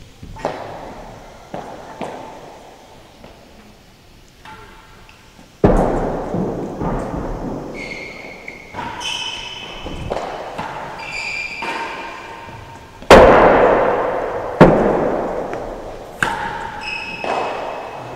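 A real tennis rally: racquet strikes on the hard ball and the ball thudding off the court's walls and penthouse roof, each impact echoing through the enclosed court. Some impacts ring briefly, and the loudest, sharpest hits come in the second half.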